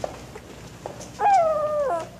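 A wooden door creaking on its hinges as it opens: one drawn-out squeak of a bit under a second, rising briefly and then sliding slightly lower, after a couple of faint clicks.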